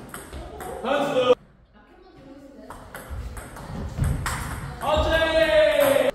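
Table tennis rally: sharp clicks of the celluloid ball off rubber bats and the table. A player gives a short shout about a second in and a longer, louder shout near the end, the kind that greets a won point.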